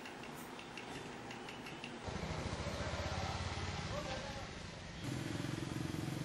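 Low background rumble with faint indistinct voices, growing louder about two seconds in and again near the end.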